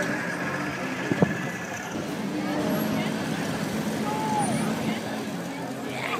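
Crowd of people talking as they walk past outdoors, over a steady low hum, with one sharp knock about a second in.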